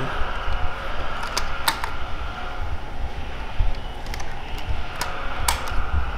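Rubber bands being stretched and hooked onto the wooden barrels of a hand-cranked rubber-band gatling gun, with a few sharp clicks and snaps spaced apart and low bumps of handling on the wood.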